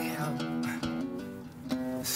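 Background music: an acoustic guitar playing a run of separate notes.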